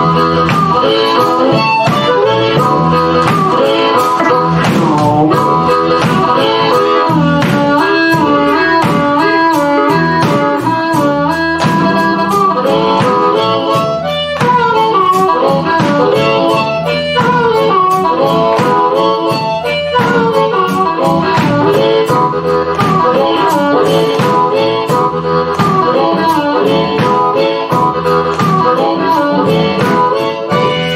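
A live band plays a bluesy number: a harmonica leads the melody over a steady drum beat, electric bass and keyboard.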